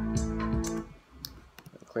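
Electronic beat playing back from a Logic Pro X session, with drums and hi-hats ticking at an even pace under sustained synth and bass notes; it stops under a second in. A few faint clicks follow in the quiet.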